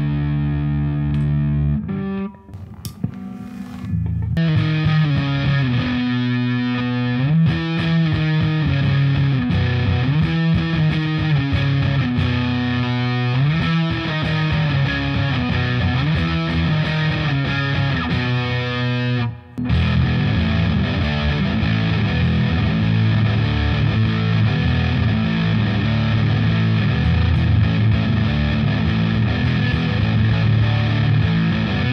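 Les Paul electric guitar played through a Pogolab overdrive pedal into a Marshall amp, heavily driven with the gain turned up and the bright switch on. A held chord rings first, then after a short break about two seconds in come distorted riffs, with another brief pause around two-thirds through before busier riffing.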